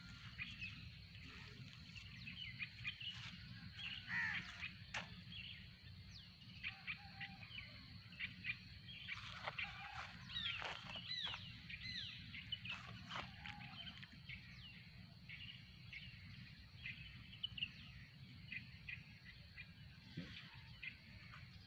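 Many birds chirping and calling at once, faint and overlapping, in short notes and quick pitch glides that come thickest about four seconds in and again around ten to thirteen seconds in, over a low steady rumble.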